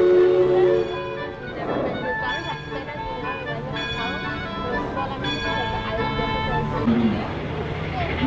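Steam whistle of the Mark Twain sternwheeler blowing a steady chord of several tones, cutting off about a second in. Music and voices follow.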